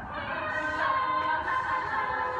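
All-female a cappella group of about eight voices singing together in harmony, with several parts sounding at once and no instruments.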